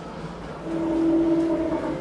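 A KONE passenger elevator setting off, heard from inside the car: a steady, even hum from the lift's drive comes in about half a second in and holds as the car travels.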